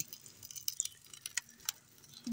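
Faint, scattered crackling pops, about eight short clicks in two seconds, from okra frying in hot mustard oil in an iron kadai over a wood fire.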